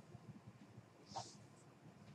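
Near silence: room tone with a faint low hum, broken once a little over a second in by a brief soft hiss.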